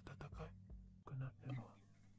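Faint whispered dialogue, a few soft short phrases over a low steady hum.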